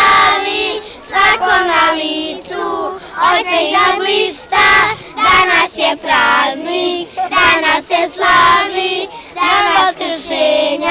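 A group of young children singing together in unison, an Easter song about painted eggs.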